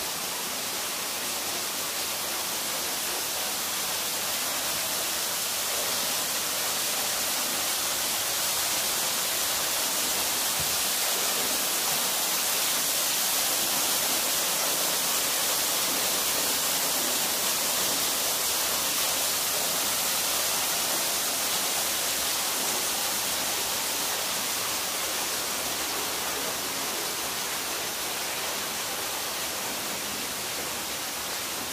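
Steady hiss of a small waterfall splashing onto rocks and into a shallow pool, a little louder in the middle.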